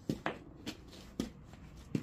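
Four short knocks or clicks, unevenly spaced over two seconds, with low background noise between them.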